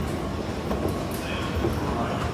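Escalator running with a steady low rumble under the general noise of a railway station.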